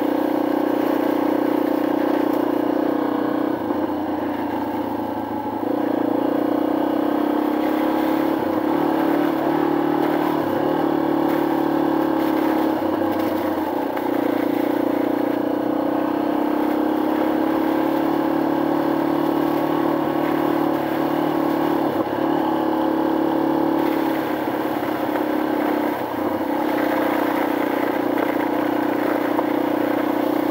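Yamaha XT250 single-cylinder four-stroke motorcycle engine running at a steady riding pace, its pitch easing off and picking up again a few times, with brief dips about five seconds in and near the end.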